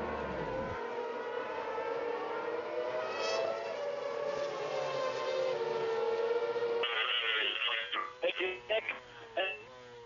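2.4-litre V8 Formula One engines droning at a steady, slowly wavering pitch in the pit lane. About seven seconds in, the sound turns thinner, with a run of sharp clicks over a steady engine tone that steps up in pitch near the end.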